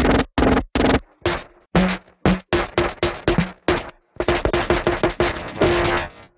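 Drum samples from Output Arcade's Alien Elements kit played from the keyboard: stop-start electronic percussion hits, many with a short pitched tone in them. After a brief gap near the middle they repeat faster and closer together.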